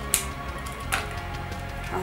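Small cardboard make-up box and its protective plastic being worked open by hand: two sharp clicks about a second apart, over soft background music.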